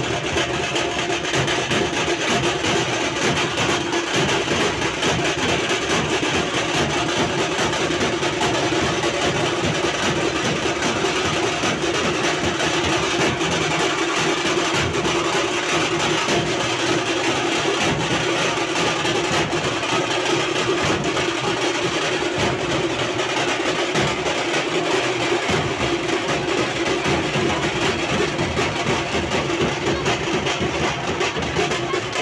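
Dhol-tasha drumming: several large stick-beaten dhol barrel drums and a tasha played together in a fast, dense, unbroken rhythm at a steady loudness.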